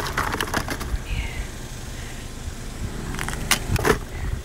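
Hands rummaging through small discarded items in a dumpster: light clicking and clattering in two bursts, one at the start and one near the end, over a steady low rumble.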